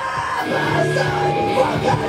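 A hardcore band playing live and loud: distorted electric guitar and bass holding ringing notes over the drums, with a screamed vocal.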